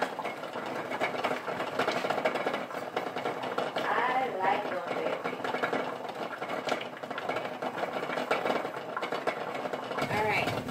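Steady background noise with an indistinct voice heard briefly about four seconds in.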